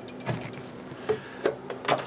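Several short light clicks and knocks of hands handling test-bench equipment and cables, about four in two seconds with the loudest near the end, over a faint steady hum.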